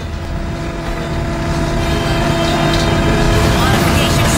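Cartoon sound effect of spaceship machinery: a low rumble under a steady hum, growing steadily louder.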